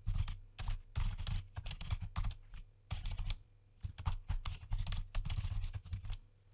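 Typing on a computer keyboard: a quick, irregular run of key clicks, with a short pause about halfway through.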